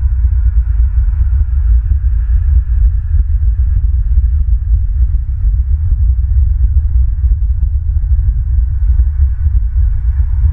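Wind buffeting the outdoor camera's microphone: a loud, steady low rumble with faint crackles.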